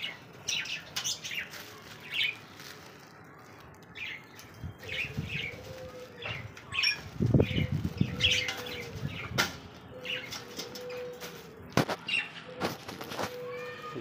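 Aviary budgerigars chirping and chattering throughout, with several low, drawn-out calls in between. A burst of wing flapping comes about halfway through and is the loudest sound.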